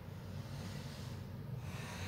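A woman breathing deeply during a rest pose, faint over a low steady hum.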